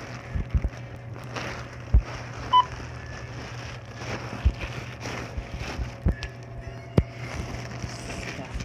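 Plastic shopping bag rustling and crinkling, with scattered knocks, as items are handled at a self-checkout over a steady low hum. One short electronic beep sounds about two and a half seconds in.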